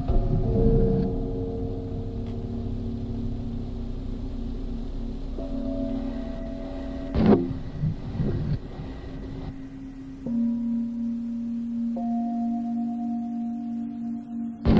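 Film score of gong-like struck tones: each strike rings on as several held pitches, with a fresh strike about seven seconds in and new low and higher sustained notes entering near the end.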